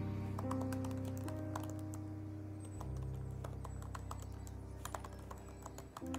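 Typing on a computer keyboard: an irregular run of quick key clicks, over soft background music with steady sustained notes.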